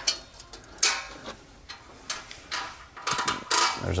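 Hand ratchet clicking in short spells as the exhaust mounting bolts are loosened, a few clicks about a second in and a quicker run of them near the end.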